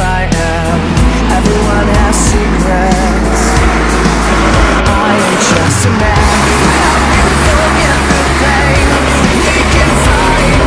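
Music playing over the engine of a Pro Lite off-road race truck racing on dirt.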